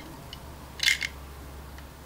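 A brief light plastic click about a second in, with a fainter tick before it, as the fold-down stabilizer legs of the World's Smallest Transformers Optimus Prime toy trailer are worked by hand.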